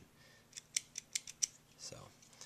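Light, sharp clicks in a quick series, about half a dozen from about half a second in, as the small metal and plastic parts of a disassembled Marlin 795 rifle's trigger assembly are worked by hand.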